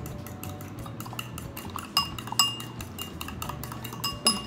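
Fork beating eggs in a ceramic bowl: a rapid run of metal clinks against the bowl, several a second. A few louder, ringing clinks come about halfway through.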